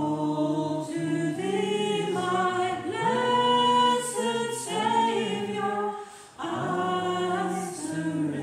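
A church congregation singing a hymn together, unaccompanied, in long held notes, with a short breath pause about six seconds in.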